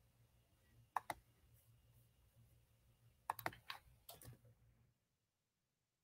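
Faint clicking of keys being typed on a laptop keyboard: two taps about a second in, then a short run of taps a little after the middle.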